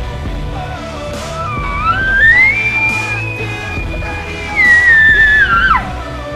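Elk bugle call blown by a hunter through a bugle tube: one long high call that rises, holds for about two seconds, then falls and breaks off just before the end. Rock music plays underneath.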